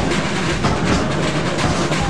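Marching band playing brass instruments, sousaphones included, over a steady drum beat of about three beats a second.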